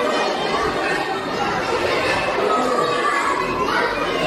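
Many children's voices chattering and calling at once, with no single speaker standing out.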